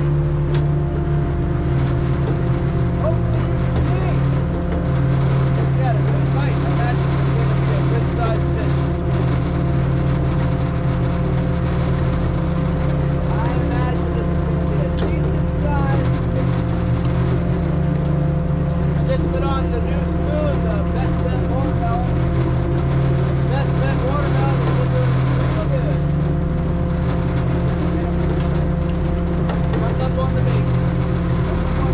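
A fishing boat's engine and hydraulic gurdies run with a steady low drone and constant hum tones. Short squeaky chirps come and go through the middle.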